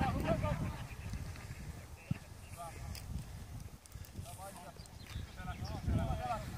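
Short shouts and calls of football players across an open grass pitch, heard several times, over a choppy low rumble of wind on the microphone. A single sharp knock about two seconds in.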